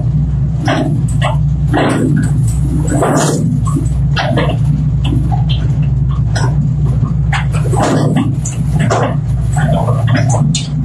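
A machine running with a steady low hum, with irregular short, sharp bursts of noise over it, a second or less apart.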